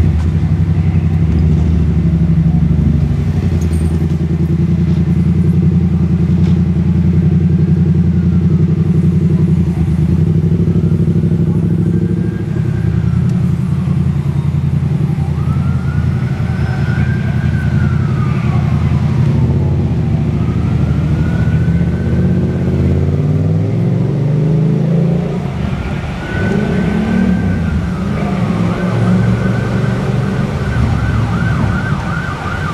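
A heavy diesel engine running steadily. From about ten seconds in, an emergency-vehicle siren wails, rising and falling every few seconds and getting louder near the end.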